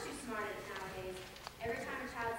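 Young actors speaking their lines on stage, the voices picked up from out in the audience, with a brief click about one and a half seconds in.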